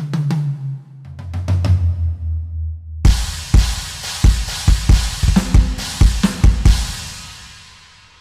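Roland TD-17 electronic drum kit played through the module's Sports Arena ambience at huge room size. Ringing tom hits come first, then a crash about three seconds in and a fast run of kick-drum hits under cymbals. The sound fades away in a long arena-like reverb tail.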